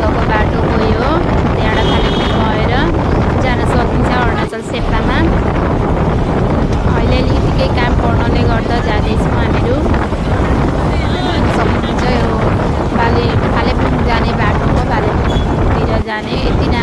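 Wind rushing past an open window of a moving vehicle and buffeting the microphone, over the engine and road noise of the drive, with a brief lull about four and a half seconds in.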